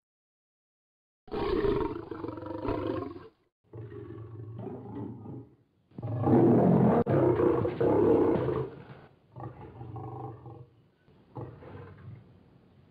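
MGM logo lion roars: after about a second of silence, a run of five roars and growls with short pauses between them. The third, about halfway through, is the longest and loudest.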